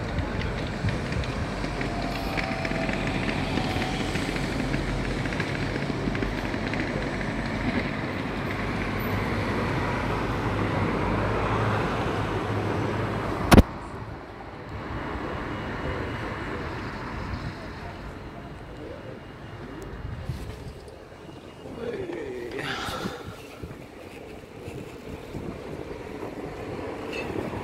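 Steady rumble of distant town traffic, louder in the first half, with one sharp click about halfway through, after which the background is quieter and uneven.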